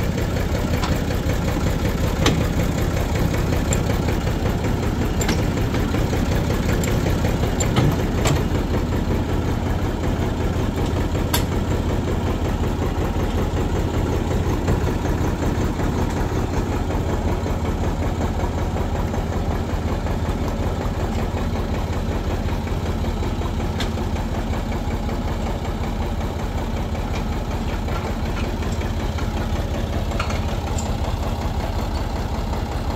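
Tractor engine idling steadily, with a few sharp metal clinks from the sprayer being hitched up.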